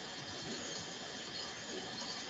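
Faint, steady hiss of background noise on an open microphone, with no speech.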